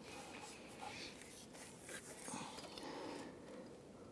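Faint rustling and light knocks of hands working a rubber serpentine belt around the engine's pulleys.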